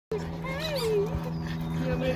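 A pug whining with a rising-and-falling pitch among people's voices, over a steady low hum.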